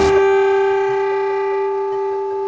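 One long held note, steady in pitch, from the sensor-equipped bass clarinet and its live electronics. It comes in as a dense electronic texture cuts off at the start.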